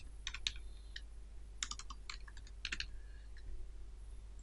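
Computer keyboard typing: faint keystrokes in irregular clusters with short pauses between them.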